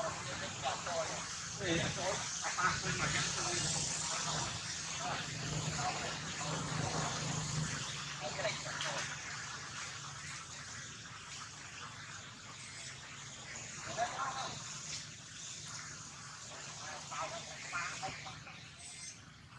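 Indistinct voices of people talking in the background, most active in the first half and again briefly past the middle, over a steady high hiss. A low steady hum runs under the first half.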